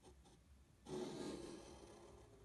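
Pencil lead of a pair of compasses scraping across paper as an arc is drawn. It starts suddenly about a second in and fades gradually.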